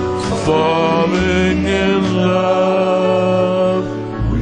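A man singing long, held notes into a microphone over a karaoke backing track of a slow ballad. The voice sustains two long notes, the second ending just before the end.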